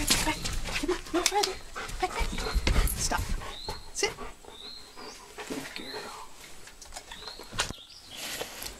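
Bernese mountain dog whimpering: a string of short, high squeaky whines.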